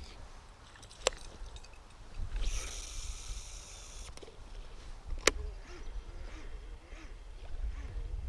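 A baitcasting reel being cast: a sharp click, then about two and a half seconds in a high whir for over a second as the spool pays out line, and another sharp click about five seconds in. Wind rumbles on the microphone throughout.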